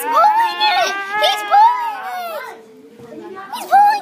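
Children's voices talking and exclaiming over one another. They drop off about three seconds in, then a short high cry comes near the end.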